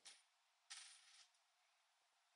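Near silence: room tone, with a faint click right at the start and a brief soft hiss about two thirds of a second in.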